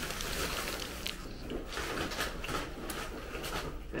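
Paper burger wrapper crinkling in the hands while a burger is bitten into and chewed, with a string of soft, irregular crackles and rustles.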